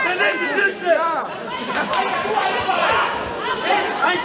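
Many voices talking and calling out over one another, echoing in a large sports hall.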